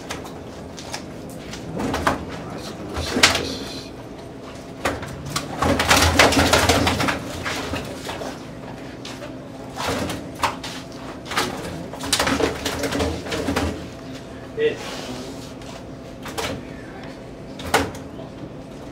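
Plastic bag rustling and short knocks as bass are tipped from a bag into a plastic weigh basket on a scale, with a longer rush of rustling and splashing about six seconds in.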